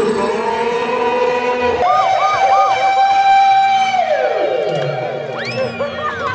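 Edited-in comedy sound effects: held electronic siren-like tones, a quick run of bouncing pitch hops about two seconds in, then long falling whistle glides near the end.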